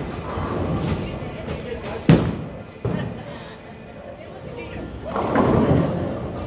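A bowling ball lands on the wooden lane with a sharp thud about two seconds in, followed by a smaller knock. It rolls down the lane, and near the end the pins crash in a longer, rising clatter.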